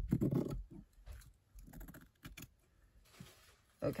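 Scissors cutting along the edge of a muslin cover: a few short, sharp snips, with a soft rustle of cloth shortly before the end.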